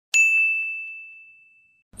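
A single ding sound effect: one bright, high-pitched strike that rings out and fades away over about a second and a half.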